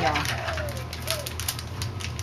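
A dove cooing: one smooth falling note in the first second, then a shorter note just after. Light clicks and taps of utensils against plastic dye cups sound throughout.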